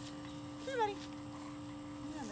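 A bulldog gives one short, high whine less than a second in, its pitch sliding down and then jumping up.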